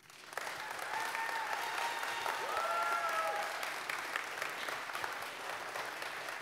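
Audience applauding, swelling up within the first half second and then holding steady, with a few voices calling out in the crowd.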